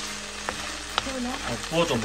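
Marinated beef pieces sizzling in hot oil in a nonstick frying pan as they are stirred with a wooden spoon, a steady hiss with two sharp clicks about half a second and a second in.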